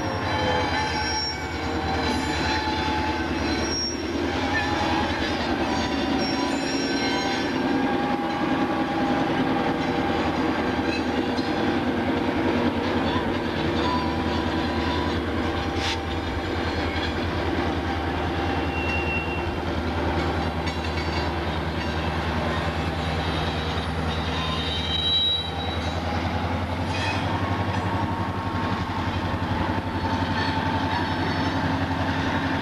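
EMD GP9 diesel locomotive's two-stroke 16-567 engine running steadily as the locomotive moves a cut of hopper cars, with a few short high wheel squeals a little past halfway and again near the end.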